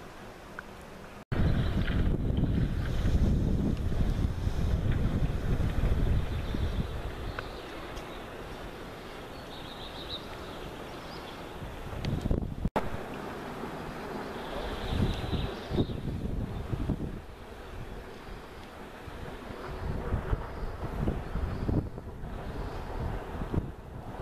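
Wind buffeting the camera microphone in gusts: a low rumble that starts suddenly about a second in, is strongest for the next few seconds, eases, then comes back in gusts from about twelve seconds on.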